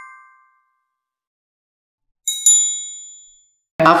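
Notification-bell sound effect from a subscribe animation: two quick high-pitched dings about two and a half seconds in, ringing out for about a second. A lower chime that began just before fades out in the first half second.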